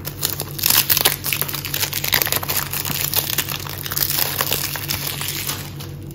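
Cellophane shrink-wrap being torn and peeled off a small cardboard cosmetics box by hand, crinkling continuously and stopping near the end.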